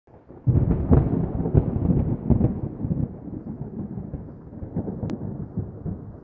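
A thunderclap with crackling, rolling rumble that breaks out about half a second in and slowly dies away over the next few seconds.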